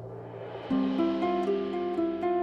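Concert harp playing, with a soft swell at first and then, about two-thirds of a second in, a clear run of plucked notes at about four a second.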